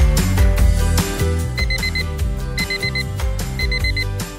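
Background music with a steady beat. From about a second and a half in, a digital alarm clock beeps in groups of four quick beeps that repeat once a second.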